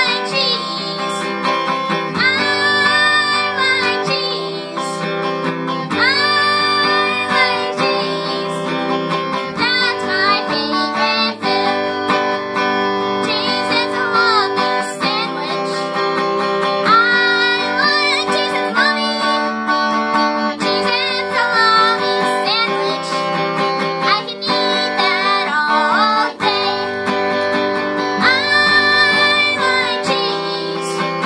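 A boy singing while strumming chords on a Fender electric guitar, in sung phrases over steady strumming.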